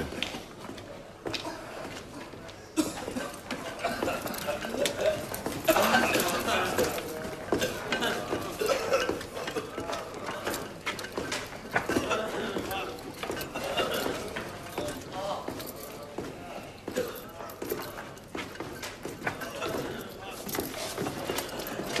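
Indistinct voices in the background, with scattered small clinks and knocks throughout.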